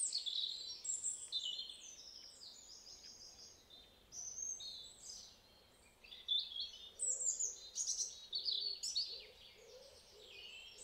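Songbirds singing: quick runs of short, high chirping notes, fading over the first few seconds, a brief burst around four seconds in, then busier again from about six seconds in.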